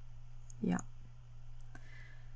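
Computer mouse button clicking: a couple of short, sharp clicks about a second apart, over a faint low hum.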